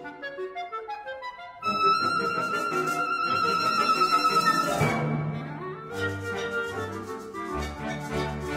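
Solo clarinet with military concert band accompaniment, playing quick running passages. About two seconds in the music grows loud, with a long held high note over busy figures. From about five seconds, low brass and bass notes join in a steady rhythm.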